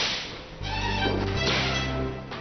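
Whip lashes in a flogging, one sharp crack at the start and another about a second and a half later, over background music with low held notes.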